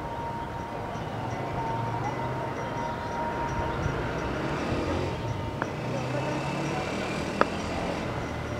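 Steady outdoor background rumble with faint distant tones, broken near the end by two sharp knocks about two seconds apart, the second louder.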